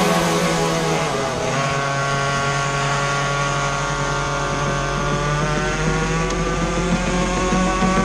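Go-kart engine heard from onboard the kart, running at racing speed. Its note dips briefly about a second in, then holds fairly steady with small rises and falls through the bend.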